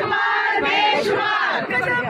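A group of women shouting a slogan together, several voices overlapping loudly.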